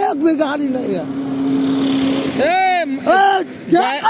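A man's voice in loud, drawn-out cries that rise and fall, with a steady rushing noise from a passing vehicle in the middle, between the cries.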